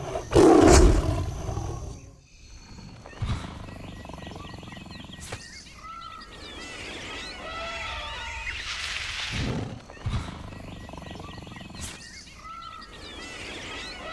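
Jungle ambience sound effect: a loud big-cat roar about half a second in, then a steady wash of wildlife with animal calls that rise and fall in pitch and come back every few seconds.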